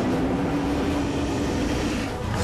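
A dramatic sound effect from a TV fight scene: one long, low drone that rises slightly in pitch over a rough rumble, breaking off near the end.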